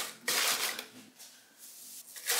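Shredded kraft-paper packing fill rustling and crinkling as hands press it down inside a small cardboard box. It is loudest in the first second, then fades to a faint rustle.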